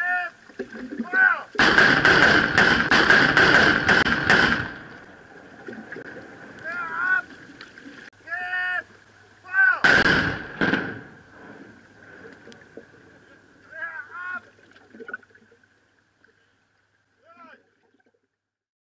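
A line of marksmen's rifles firing a salute volley as one sharp, loud report about ten seconds in, with short shouted commands before and after it. A couple of seconds in there are about three seconds of dense, loud crackling.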